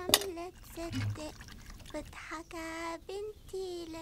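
A voice humming a slow wordless tune in held notes, with a sharp metal clank just after the start as an aluminium water jug is set down on the ground, and a little water splashing in a plastic washing basin.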